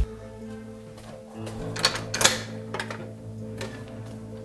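Background music holding steady chords, with a few sharp metallic clicks, loudest about two seconds in: an apartment door's deadbolt and latch being worked as the door is unlocked and opened.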